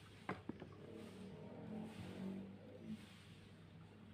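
A 12 V illuminated plastic rocker switch is clicked, with two sharp clicks about a fifth of a second apart. After that comes a faint, wavering pitched sound in the background.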